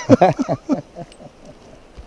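A man laughing loudly in a quick run of short bursts that fade out within about the first second.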